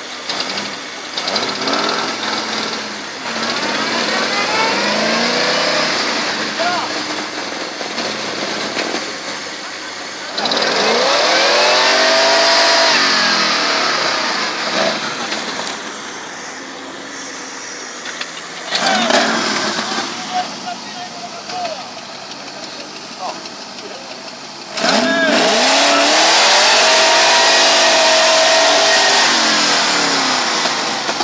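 Off-road 4x4 engines revving hard under load in about four long bursts, the pitch climbing and falling, as a tow rope drags a stuck buggy out of mud and water. A loud hiss runs under the heaviest revving.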